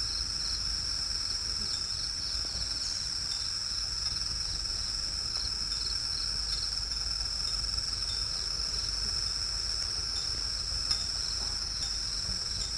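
Insects calling in a steady, unbroken high-pitched chorus.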